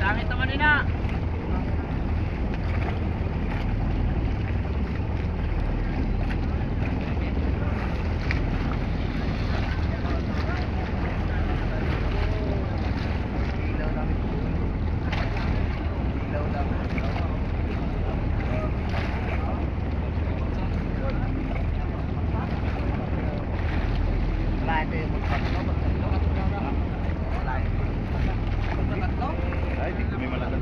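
Steady low rumble of wind buffeting the microphone and water moving around a bamboo-outrigger boat at sea, with faint voices in the distance.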